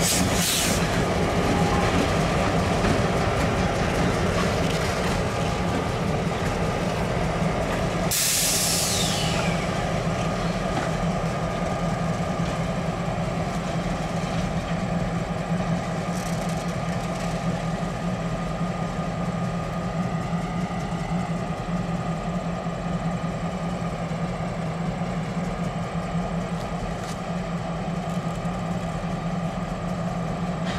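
Diesel-electric locomotives running with a steady engine drone as they move along the sidings. A short burst of air hiss comes near the start, and a sharper hiss about eight seconds in falls in pitch as it fades.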